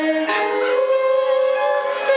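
A song performed live by two women singing long held notes together, shifting to new notes shortly after the start, with musical accompaniment.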